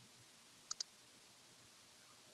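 Near silence: faint room tone, with two small clicks in quick succession a little under a second in.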